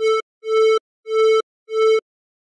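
An electronic tone repeating at one pitch, four notes, played through a Sonitus:gate noise gate set to a slow attack (about 260 ms) and a 5 ms release. Each note fades in gradually and then cuts off abruptly, which is the gate slow to open but quick to close.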